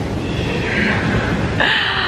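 Hot tub jets running, a steady churning of bubbling water, with a woman's short high-pitched vocal squeal near the end.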